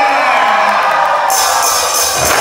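Live school brass band concert in a large hall: a held note ends about half a second in, giving way to cheering and shouting that grows brighter past halfway.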